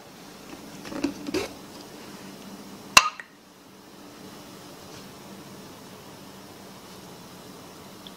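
The clear lid of a hydrogen water pitcher being handled and set down on a stone countertop, with one sharp clink about three seconds in. Soft handling sounds come just before it, and a faint steady hum lies underneath.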